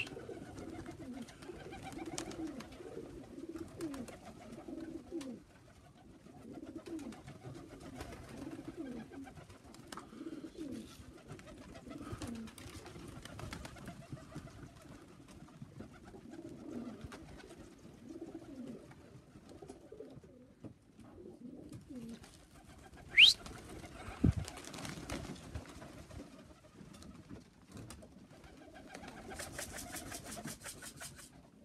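Tippler pigeons cooing over and over, short low calls in steady succession. About 23 seconds in, a brief sharp whistle rises quickly in pitch, and a quick run of clicks comes near the end.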